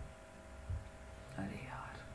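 A woman whispering faintly under her breath, most clearly in the second half, over a low steady hum, with one soft knock about halfway through.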